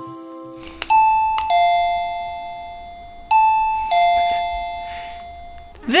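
Doorbell chime sounding its two-note ding-dong twice, about two and a half seconds apart. Each time a higher note is followed by a lower one, and both ring on and fade.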